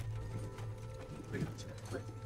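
Quiet war-film soundtrack: a low, sustained music score with faint voices under it and a few light taps.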